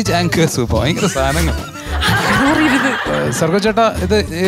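People talking and laughing, with a louder burst of audience laughter about halfway through.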